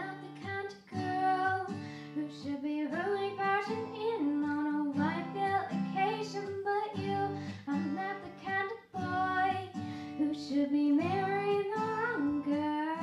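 Young female vocalist singing a song into a handheld microphone, her melody gliding over a steady guitar accompaniment.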